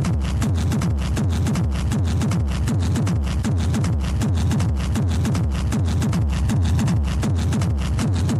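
Hard techno music: a fast, steady kick drum beat with dense, rapid percussion over it.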